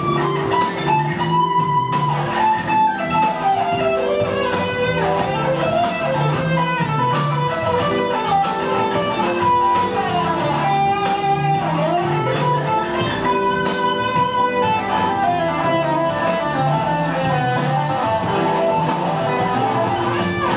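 Stratocaster-style electric guitar through an amp, played as a continuous run of single-note melodic phrases that step up and down, over a lower part that repeats underneath. The lines follow the lesson's pattern: three notes in stepwise motion, then a leap of a third.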